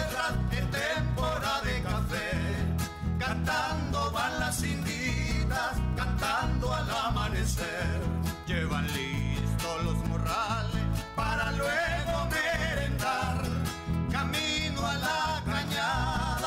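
Lively Nicaraguan folk dance music with guitar, a steady bass beat and a wavering melody line.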